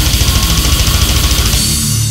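Brutal death metal band playing a fast blast beat under down-tuned distorted guitars; about a second and a half in the drums stop and a low held chord rings on.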